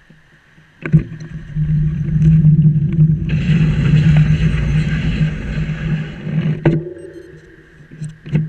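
Wind buffeting an action camera's microphone while moving along the road: a loud rumble that starts suddenly about a second in, grows hissier in the middle and drops away near the end, over a steady low hum.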